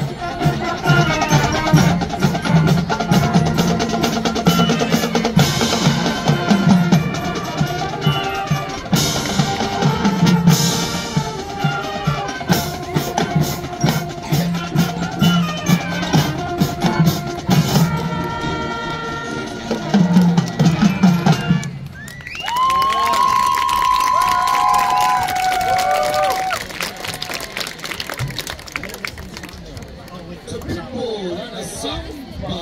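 Marching band playing a loud brass-and-drumline passage with heavy bass drum. The music cuts off about 22 seconds in, and crowd applause and whooping cheers follow.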